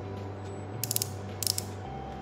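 Two short bursts of rapid ratcheting clicks from the twist collar of a Maybelline Instant Age Rewind concealer, turned to push product up to the sponge tip.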